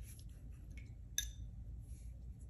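Faint scratching of a watercolor brush on paper, then a single light clink with a short ring about a second in.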